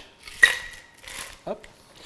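A single sharp metallic clink with a short ringing tone from stainless-steel bar tools, a cocktail shaker tin and fine-mesh strainer, as the double-straining of a cocktail is finished.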